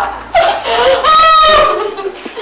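A person's shrill, high-pitched cry: a short rising yelp, then a long held squeal about a second in.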